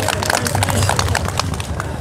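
A crowd clapping: many hands at once in an irregular patter of sharp claps, with voices underneath.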